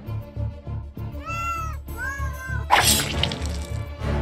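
Two meows from a cat, each call rising and then falling, over tense background music with a low pulse. They are followed about three quarters of the way through by a sudden loud crash that rings on briefly.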